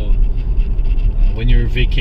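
Steady low rumble of a car driving, heard from inside the cabin. A man's voice starts talking over it near the end.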